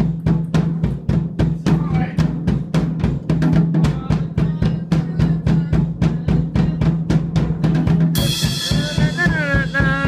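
Drum kit played in a fast steady beat, about four to five hits a second, over a steady low hum. About eight seconds in, a bright cymbal crash rings out and fades, with a wavering pitched sound after it.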